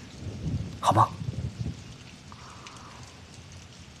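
Steady rain-like hiss with a low rumble under it in the first second and a half, and a man's brief spoken question about a second in.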